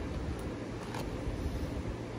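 Faint handling noise of a record mailer package being worked open by hand: a low steady rumble with a couple of soft clicks.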